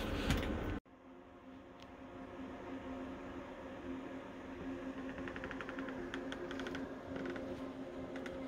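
Faint steady mechanical hum, with a short run of rapid light ticking about five seconds in.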